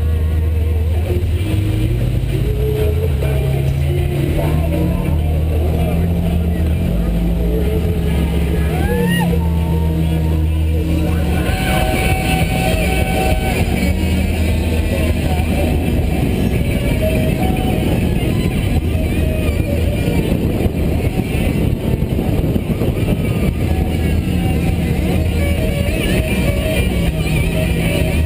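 A motorboat engine running steadily at low speed, with music playing alongside it.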